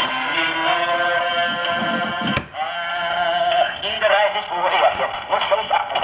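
Wind-up acoustic gramophone playing an old record of a singer with accompaniment, the sound thin and hissy with little treble. The sound drops out briefly about two and a half seconds in.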